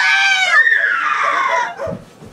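A person's high-pitched scream, about a second and a half long, holding its pitch and then falling away toward the end.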